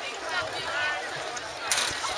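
Indistinct voices of spectators calling out across an outdoor running track, over steady open-air background noise, with one short sharp noise near the end.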